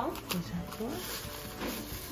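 Voices over background music.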